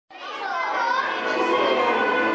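A crowd of children's voices chattering and shouting together, with music underneath, starting right at the opening.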